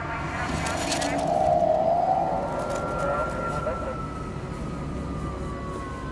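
Film sound mix of a police siren wailing over a low steady rumble, its pitch sliding slowly down through the second half.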